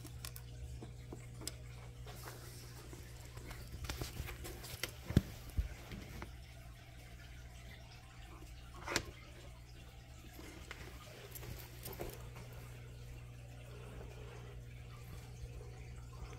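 Faint handling noise of small clipper parts and the phone on a workbench: scattered light clicks and taps, a few at a time, over a steady low hum.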